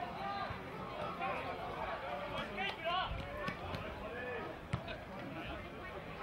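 Indistinct voices of players and spectators calling out across an open sports ground, with no clear words, and a single sharp knock about three-quarters of the way through.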